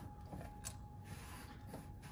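Quiet workshop room tone: a faint steady hum with a couple of faint clicks.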